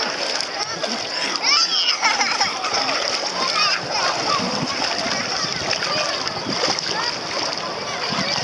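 Many voices of children and bathers chattering and calling over one another, with water splashing close by as a man wades on hands and knees through shallow sea water with a child on his back.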